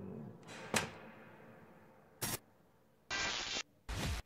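Edited-in time-travel effect sounds: a sharp click, then short bursts of harsh, static-like noise that switch on and off abruptly, the longest lasting about half a second near the end.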